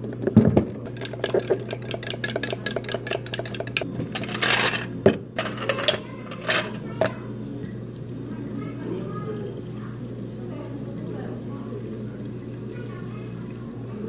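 Ice cubes clattering into cups from an ice scoop: a quick run of clinks and knocks through the first few seconds, with a few louder knocks around five to seven seconds in. After that it goes quieter, with a low steady hum underneath.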